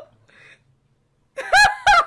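A woman laughing in loud, high-pitched squealing whoops, starting about one and a half seconds in after a nearly silent first second.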